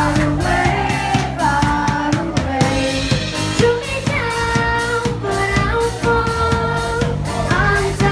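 A live pop band playing with a steady drum-kit beat and keyboard, with a girl's voice singing held notes over it.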